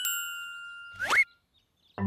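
Cartoon sound effect: a bell-like ding that rings and fades for about a second, then a short, quickly rising whistle-like zip.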